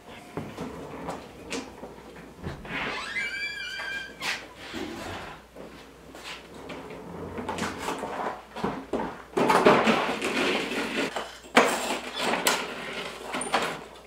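Metal clatter and rattling of a job-site table saw on its wheeled folding stand being rolled through a doorway. It is loudest and densest for a few seconds near the end. A brief squeak comes about three seconds in.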